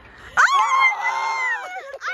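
A person's long, high-pitched squeal of delight. It starts about half a second in, holds roughly level for over a second, then tails off.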